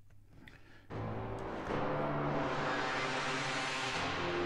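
Aparillo software synthesizer sounding a sustained chord that comes in about a second in, its sound growing brighter over the following two seconds.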